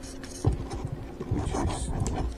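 Handling noise from a small foam RC plane's fuselage being worked by hand as its aileron servo plug is pushed into the flight control board: a knock about half a second in, then soft bumps and rubbing.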